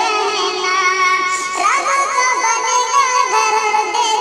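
A sung voice over music, with a quick rising sweep about one and a half seconds in.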